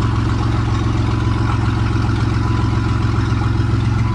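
Van engine idling steadily, running on the battery in its new home-made battery box.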